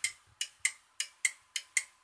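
Electromechanical relays on an Arduino-controlled relay board clicking, about seven short, sharp clicks in quick, loose pairs, as the relays switch on and off.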